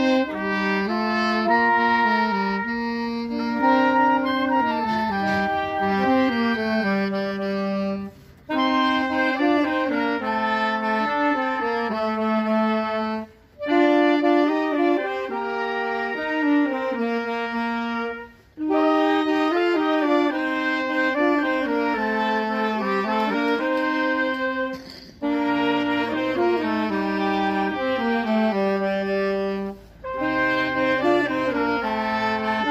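A small wind band of clarinet, trumpet and saxophone playing a tune together in phrases, with short breaks between phrases every five seconds or so.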